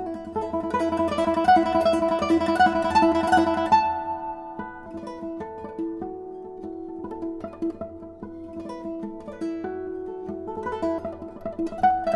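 Background instrumental music of plucked strings, busy with quick notes for the first few seconds, then thinning to sparser, held notes.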